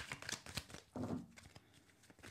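A deck of Rider-Waite tarot cards being shuffled by hand in an overhand shuffle: a quick run of soft papery slaps and flicks that thins out toward the end.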